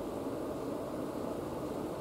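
Room tone: a steady, even background hum with no distinct events.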